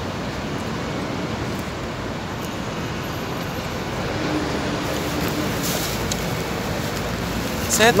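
Steady city street traffic noise, an even background hum of passing vehicles, with a man's voice breaking in at the very end.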